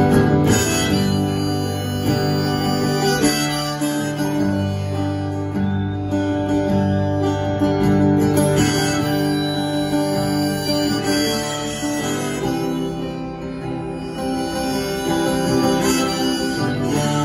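Live solo instrumental passage: acoustic guitar strummed steadily while a harmonica plays long held notes over it.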